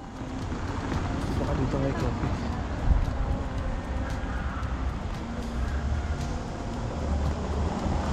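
Outdoor street ambience on a moving camera's microphone: a steady rumbling noise with traffic and a few voices.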